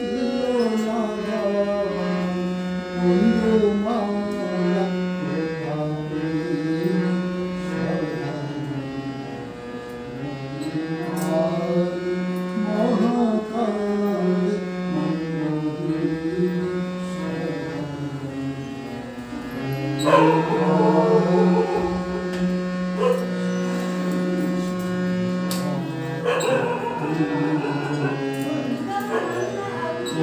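Harmonium playing held notes and chords while voices sing along; the singing grows louder about two-thirds of the way in.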